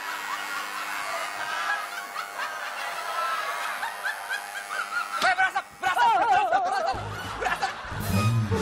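Studio audience laughing and tittering, with a stronger burst of laughter about three-quarters of the way through. Background music with a low beat comes in near the end.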